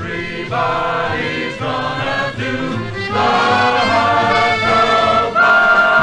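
Swing vocal choir singing held chords over a band accompaniment, from a 1950s mono recording. It swells louder about three seconds in and again near the end.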